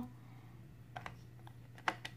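A few faint light clicks of small plastic toy pieces being handled about a second in, then a sharper click just before the end, over a low steady hum.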